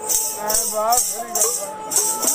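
Chimta, the long iron tongs of Punjabi folk music, jingling in rhythmic strokes about two a second, with a man's voice singing or calling between the strokes.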